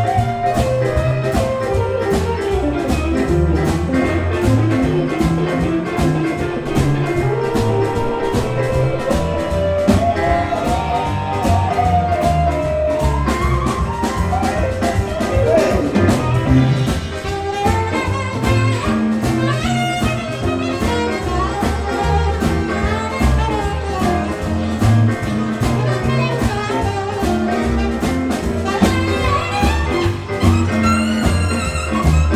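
Live blues band playing an instrumental break: saxophone and electric guitar take solos over drums and bass, with a steady beat and no singing.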